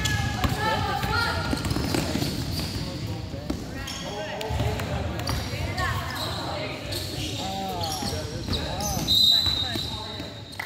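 A basketball dribbling and bouncing on a hardwood gym floor during a youth game, with players and spectators calling out in a large echoing gym. About nine seconds in, a referee's whistle gives a short, loud, high blast.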